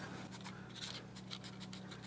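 Faint scratching and light ticks of a Drill Doctor sharpener's plastic chuck being turned by hand, tightening it just snug on a drill bit.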